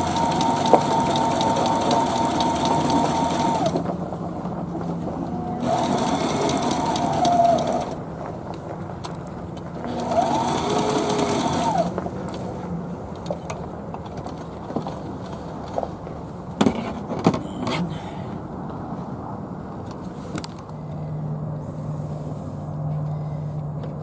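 Heavy-duty sewing machine stitching seams in upholstery fabric, running in three bursts of a few seconds each with short pauses between, a fast, even clatter of stitches over the motor's whine. After the third run it stops, leaving a few light clicks.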